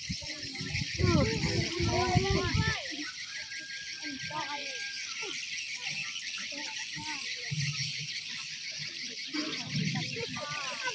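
Indistinct chatter of people nearby, loudest in the first three seconds and then fainter and scattered, over a steady high hiss.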